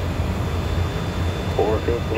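Steady low drone of cockpit noise in a twin-turbofan Cessna Citation 560 in flight on approach: engine and airflow noise. A voice starts about a second and a half in.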